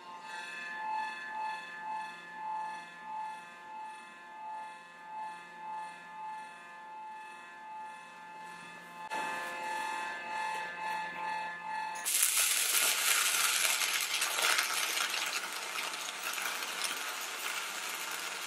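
Faint background music, then about twelve seconds in an electric arc strikes and a stick (MMA) weld runs at about 130 A. It makes a loud, steady crackling and sizzling until the end.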